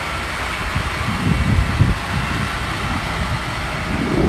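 2016 International ProStar semi-truck's diesel engine idling steadily, with uneven low rumbling from about a second in.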